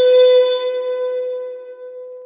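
Intro music sting ending on a single held note that fades out, its higher overtones dying away first.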